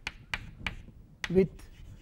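Chalk clicking against a blackboard while writing: several sharp, separate taps as each letter is struck.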